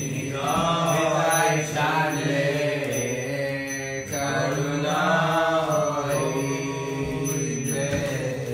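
Devotional mantra chanting: a voice sings long, drawn-out phrases over a steady low drone.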